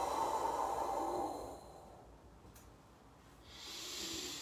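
A man's long, breathy exhaled "whoo", a wispy, windy whoo: the kidney sound of the qigong six healing sounds, voiced while bent forward pressing on the knees. It fades out about a second and a half in, and near the end comes a hissing breath in as he sits up.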